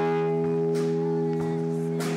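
Amplified harmonica, played with both hands cupped around a corded microphone, holding one long steady chord at full volume.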